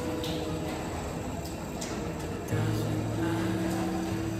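Trimming tool scraping coarse, sandy stoneware clay on a spinning potter's wheel, a rough, gritty scraping because of the sand in the clay, heard under background music.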